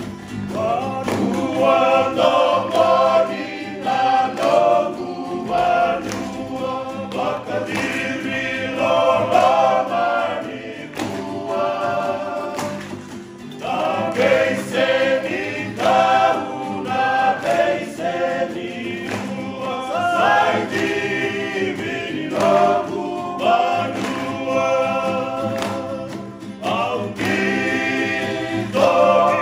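A mostly male vocal group singing in close harmony, accompanied by two strummed acoustic guitars and a ukulele. The song runs in phrases with short breaks between them.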